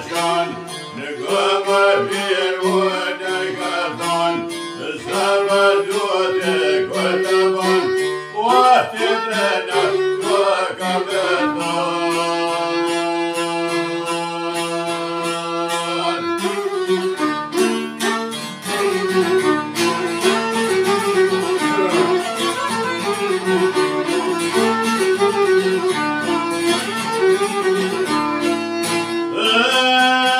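Albanian folk ballad: a man sings over a bowed violin and a long-necked plucked lute. The voice wavers and ornaments its line in the first half, then the instruments hold long notes over a steady low drone.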